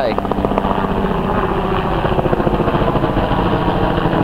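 Helicopter flying overhead, its rotor beating in a rapid, steady chop.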